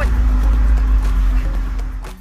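Background music over a loud low rumble and rushing noise, which cuts off just after the end.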